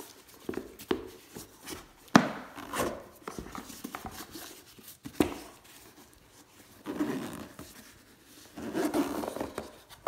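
Hands handling a fabric-covered hard-shell binocular case against a cardboard box and foam insert: rubbing and scraping, with a sharp knock about two seconds in and a few lighter taps.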